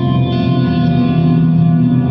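Electric guitar chord held in a long ambient wash of delay and reverb from an effects pedal. The pedal's tone control shifts the repeats from dark to brighter, with more treble coming in about a third of a second in.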